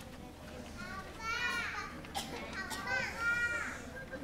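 A small child's high-pitched voice: a few short squealing calls that rise and fall in pitch, over a faint low room hum.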